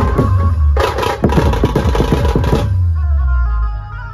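Dhumal band drums playing a loud, dense, fast rhythm that stops short about two-thirds of the way through. A low bass note carries on after the drumming stops.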